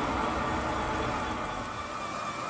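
The Goldrop Miner's 12-volt water pumps running steadily, with water circulating through the hoses into the galvanized drum: an even, unbroken mechanical hum and water noise.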